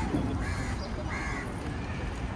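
A bird calling, about three short calls roughly half a second apart, over a steady low outdoor rumble.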